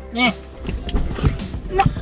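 Low thumps and rustling inside a car as it brakes hard and the passengers lurch forward, under light background music.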